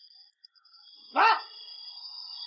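A man's voice saying one short, loud "wei" (hello) to answer a phone call, about a second in, over a faint steady high tone.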